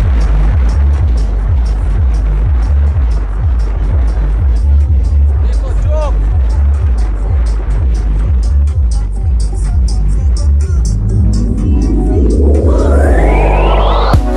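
Loud electronic music with a heavy bass beat played through the bank of subwoofers in a Volkswagen Saveiro pickup's bed, with a rising sweep over the last three seconds.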